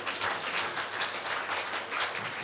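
An audience clapping: a dense, irregular patter of many hands.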